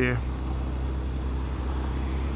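2009 Suzuki Hayabusa's inline-four engine running steadily at low revs as the bike rolls slowly along, an even low drone.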